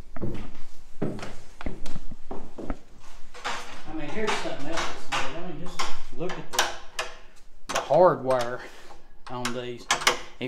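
Footsteps knocking on old wooden floorboards for the first few seconds, then a voice talking indistinctly for most of the rest.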